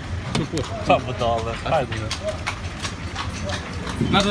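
Speech for about the first two seconds, then rustling and light clicks from the camera being handled.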